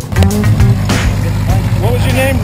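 The tail of the intro music gives way to people talking over a steady low rumble.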